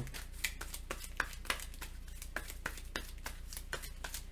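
Hands handling cards and cardboard game pieces on a tabletop: scattered light clicks and taps of card stock, irregular in timing.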